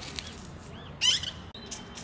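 Small birds chirping outdoors: a few short, high chirps at the start and a louder burst of chirping about a second in, over faint open-air background noise.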